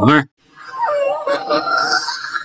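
A cartoon character's voice: a brief vocal exclamation right at the start, then, after a short gap, a drawn-out wavering vocal sound that turns into laughter near the end.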